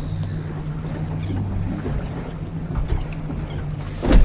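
Boat's outboard motor running steadily at idle, a low hum, with wind buffeting the microphone.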